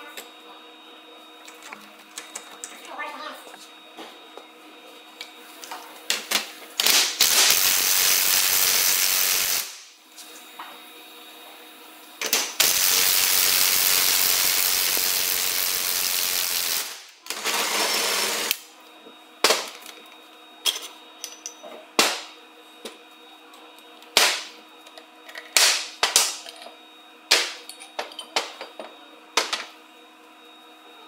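Cordless impact wrench hammering in three bursts, a short one, a long one of about four seconds and a brief last one, driving the pinion bearing puller to draw the bearing off the pinion gear. After that, a run of sharp metal clinks and knocks from steel parts being handled and set down.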